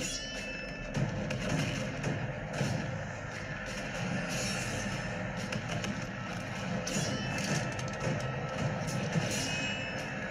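Film action score with drums and percussion, laid over fight sound effects: occasional sharp hits, some with a brief metallic ring like sword blades clashing.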